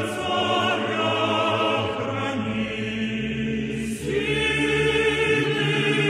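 Choral music: a choir singing long held chords that change every second or two.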